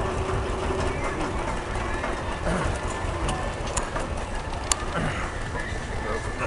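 Outdoor fairground background noise: a steady low rumble with faint distant voices, and a few sharp clicks a little past the middle.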